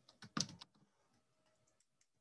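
Typing on a computer keyboard: a quick run of key clicks in the first half-second, then a few faint ticks.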